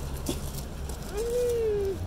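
A toddler's wordless vocalization: one long held call starting about a second in, rising slightly and then falling away, after a brief short sound near the start.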